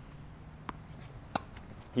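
A tennis ball bouncing once on the hard court, then the louder, sharp pop of the racket striking it on a two-handed backhand about two-thirds of a second later.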